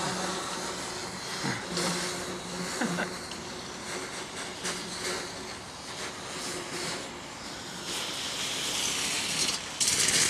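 Steam hissing from a red-hot metal pipe as water on and in it boils off. The steady hiss grows louder about eight seconds in and jumps up sharply just before the end.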